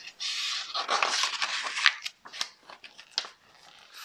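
Paper pages of a picture book being turned: about two seconds of rustling paper, then a few soft taps.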